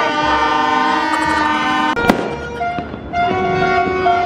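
Several plastic New Year's party horns (torotot) blown together in long, overlapping blasts at different pitches, with one sharp firecracker bang about two seconds in.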